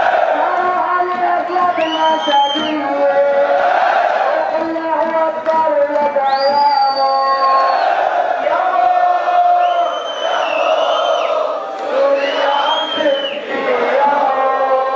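A large crowd of protesters chanting together. High held tones, about a second long, sound over it four times.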